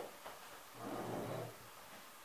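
A woman's short, soft, breathy vocal sound, like a hummed breath, about a second in and lasting under a second.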